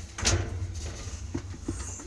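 Close handling noise at the washing machine: a short scrape or rub about a quarter of a second in, then a few faint light clicks, over a low steady hum.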